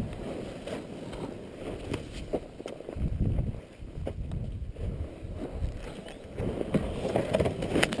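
Irregular scuffling and low rumbling: the rider's boots scraping and sliding on loose rocky dirt as he struggles with a fallen Yamaha dirt bike whose engine is not running, with a few short knocks.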